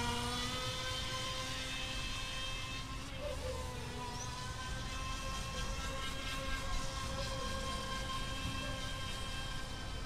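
Feilun FT009 RC speedboat's brushless electric motor whining steadily as the boat runs on the water. The pitch wavers a little a few seconds in.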